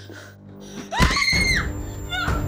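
A person's high-pitched scream about a second in, rising in pitch and then held for about half a second, over a steady low music drone.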